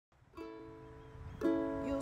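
Ukulele strummed chords ringing out as the song opens: a soft strum about half a second in, then a louder strum about a second later that keeps ringing.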